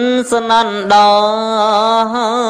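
A monk's male voice chanting a Buddhist dhamma sermon in a sung recitation. He holds long notes with a slow vibrato and breaks briefly twice in the first second.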